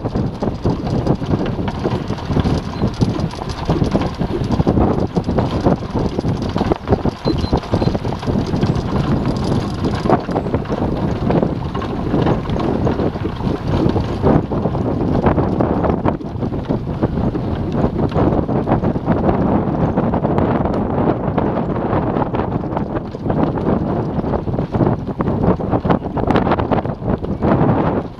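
Wind buffeting the microphone over the steady rattle and rumble of a light horse-drawn training cart rolling along a sandy dirt track behind a trotting horse, with a constant patter of small clicks and knocks.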